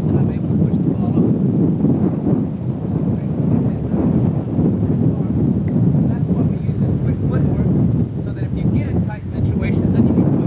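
Wind buffeting a camcorder microphone: a loud, steady low rumble, with faint indistinct voices showing through near the end.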